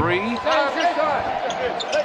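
Live basketball game sound in an arena: court sounds of play, including sneakers and the ball, under crowd noise while a three-point shot is in the air and comes off the rim.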